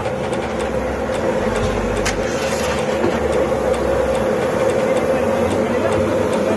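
Steady roar with a constant hum from a commercial gas-fired pizza oven running.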